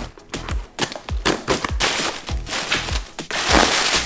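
A cardboard parcel being torn open by hand: packing tape and cardboard ripping, with crackles and snaps and the longest, loudest rip about three and a half seconds in. Background music with a beat plays underneath.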